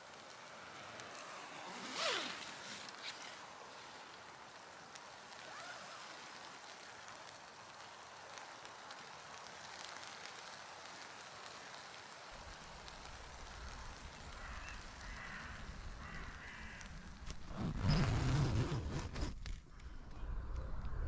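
Faint, still woodland ambience with a single short call about two seconds in and a few faint bird calls later. A burst of rustling noise near the end.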